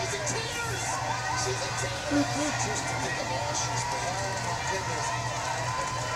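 Indistinct background voices talking over a steady low hum.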